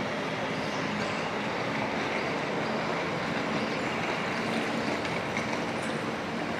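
Steady city street ambience of traffic passing below, an even wash of noise with no single event standing out.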